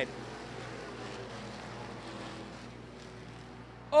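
Hobby stock race cars running as a pack on a dirt oval, their engines a faint, steady drone that eases slightly near the end.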